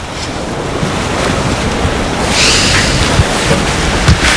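Ocean surf: a steady rush of waves on a shore, with one wave washing in more loudly a little past halfway.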